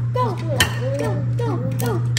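An egg cracked by hand over a ceramic bowl, with one sharp tap of shell about half a second in, under background voices.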